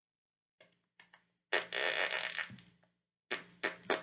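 Raspberry-like mouth noise blown right into a microphone: one long rasp starting about a second and a half in and lasting about a second, then three short ones near the end, with a low hum under each.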